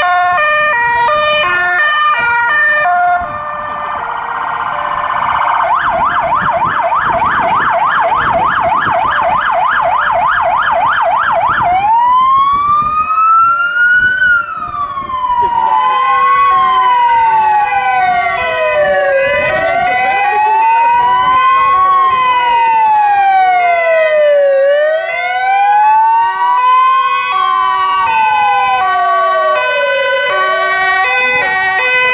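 Emergency vehicle sirens at close range, several overlapping. A two-tone siren steps back and forth between two pitches. From about five seconds in, a fast yelp sweeps up and down about four times a second. Near the middle it changes to a slow wail that rises and falls every two to three seconds, over the continuing two-tone.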